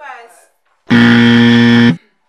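A loud, flat game-show buzzer sounds for about a second, starting about a second in: the 'wrong answer' sound effect. A woman's short exclamation comes just before it.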